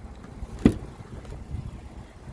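Door latch of a 2014 Ford F-150 pickup releasing with a single sharp clunk as the front door handle is pulled open, followed by a few lighter knocks of the door swinging, over a low steady rumble.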